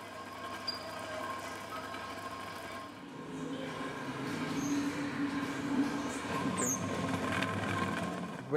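A rumbling, grinding drone from a kinetic sound-art installation, with steady high tones held over it. It swells and grows louder about three seconds in.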